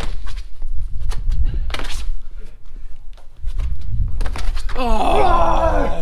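Thuds and scuffs of a parkour vault and landing on a brick wall and tarmac path over a steady low rumble, then a long, drawn-out groan from the athlete, falling in pitch, near the end as he drops to the ground after a failed attempt.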